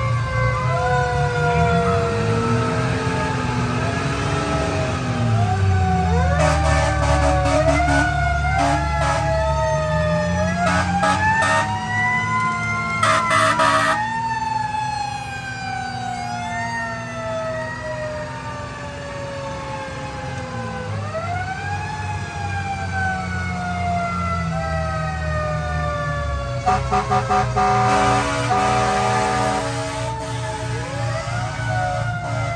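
A fire engine's mechanical Q siren wails, winding up and slowly coasting down in long rising and falling sweeps. Other sirens gliding up and down overlap it. Short clusters of horn blasts come about a quarter of the way in, near the middle and near the end.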